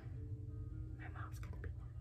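Quiet room with a steady low hum, faint background music, and soft whispering with a few small clicks about a second in.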